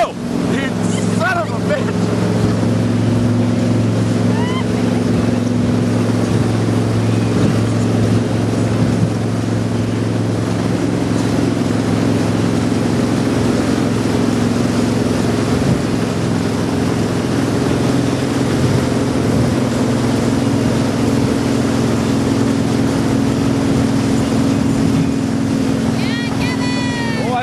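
Motorboat engine running steadily, with water noise around the hull.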